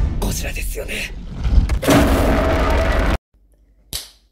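A movie soundtrack playing loudly, music and voices over a heavy low rumble, that cuts off abruptly about three seconds in. A single sharp click follows just before the end.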